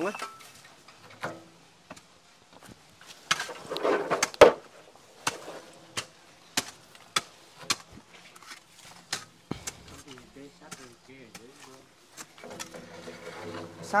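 Shovel digging into stony soil with a series of sharp knocks and scrapes, and corrugated metal roofing sheets being handled; the loudest hit comes about four seconds in.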